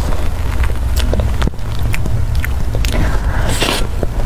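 Eating a soft cream dessert: a metal spoon scraping and clicking inside a plastic cup, then a louder wet mouthful near the end as the cream is taken off the spoon. A steady low hum runs underneath.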